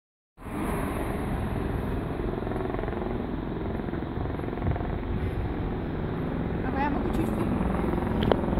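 Steady rumbling city street noise from road traffic, with a car passing near the end.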